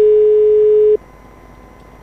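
Telephone ringback tone: one steady beep about a second long, heard over the phone line while the called number is ringing and not yet answered.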